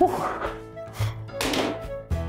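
A rubber playground ball thrown at a child-size basketball hoop, landing with a single thunk on the hoop about a second and a half in: a missed shot. Upbeat background music plays throughout, with a short shout at the start.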